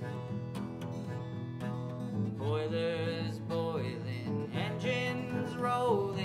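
Acoustic guitar playing a country ballad's instrumental break between verses, with a held, bending melody line coming in about two seconds in.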